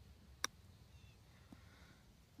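A golf iron striking the ball once on a short pitch-and-run chip: a single sharp click about half a second in.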